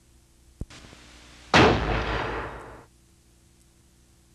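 Title sound effect: a faint click, a soft hiss for about a second, then a sudden loud blast-like boom that dies away over about a second.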